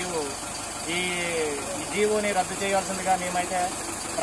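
A man's voice speaking, over an engine idling steadily in the background.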